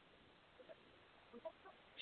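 Near silence: room tone between phrases of talk, with a few faint, brief high blips near the middle.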